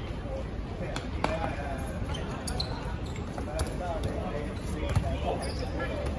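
Dodgeballs thudding on the hard court and off players in a handful of sharp impacts, the loudest about five seconds in, with players calling out in between.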